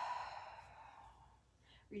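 A woman's long audible exhale, a breathy sigh that fades away over about a second and a half.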